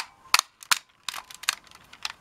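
Plastic clicks from a Power of the Force AT-ST walker toy as its Stand/Walk lever is switched and its legs shift: a string of sharp clicks, the first the loudest.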